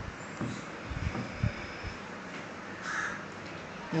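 Hands working flour, butter and egg together in a ceramic bowl, with a few faint soft knocks against the bowl. A short bird call about three seconds in.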